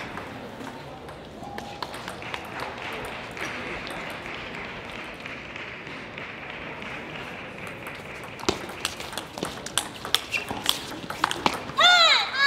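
A table tennis ball clicking back and forth off rackets and the table in a quick doubles rally of about ten hits over some three seconds, over a steady murmur in the hall. A loud voice at the very end.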